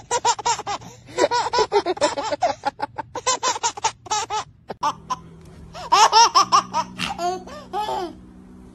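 A baby laughing hard in long runs of quick, high-pitched laughs, with a brief break just past the middle before a second burst of laughter.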